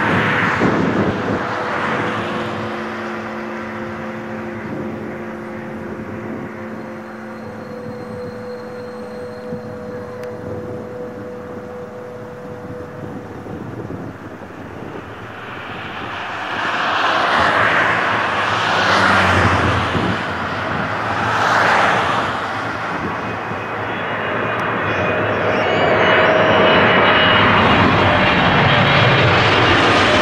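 Airliner jet engines: an Airbus A330's steady whine fades over the first half. Then a Boeing 777 on final approach grows from about 16 seconds into a loud roar with a whine as it passes low overhead near the end.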